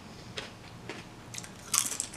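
Crunching on a potato chip while chewing: a few sharp, crisp crunches, the loudest cluster near the end.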